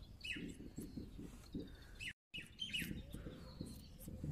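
Small birds chirping, short falling calls heard a few times, with a brief gap of total silence a little past halfway.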